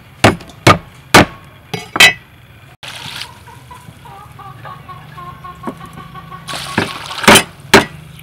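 Cut long beans clinking sharply against a stainless steel bowl as they are tossed, five or so clicks in the first two seconds. Then water runs into the bowl to wash the beans, with a louder rush of water and two more clinks near the end.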